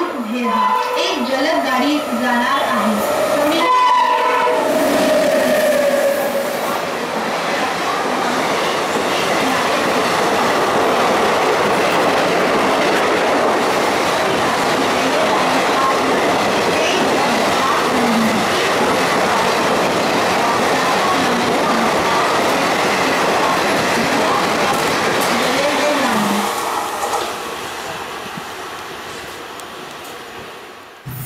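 A WAP-7 three-phase electric locomotive and its express coaches running through a station at speed: a horn sounds about four seconds in, then a long loud rush of passing coaches with wheels clattering over the rail joints, fading away over the last few seconds.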